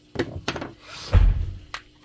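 Handling sounds of a paper pad and a plastic cutting tool on a tabletop: a few light clicks and taps as the tool is set down, then a dull thump about a second in as the pad meets the table, with paper rustling.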